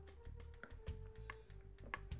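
Quiet background music with held notes, with a few faint crunching clicks from chewing a hard, crunchy milk-chocolate candy.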